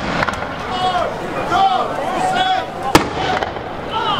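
A single sharp blank gunshot about three seconds in, from a musket fired in a mock battle, heard over nearby voices.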